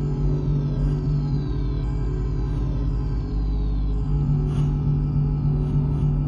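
Contemporary music for piano and live electronics: a loud, dense low drone of sustained tones, with high tones sliding downward over and over, about once a second.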